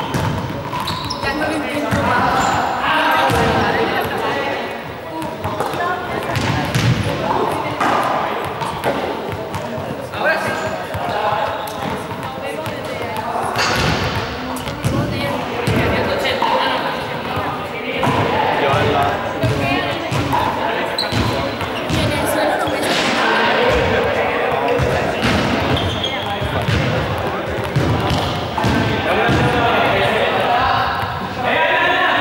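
Small balls bouncing repeatedly on a sports-hall floor, short irregular knocks throughout, over continuous background chatter of voices in the large hall.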